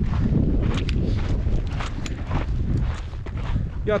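Wind buffeting the microphone in a heavy low rumble, with scattered crunching footsteps on loose volcanic scree.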